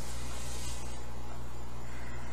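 A steady low background hum with a faint hiss over it, unchanging throughout.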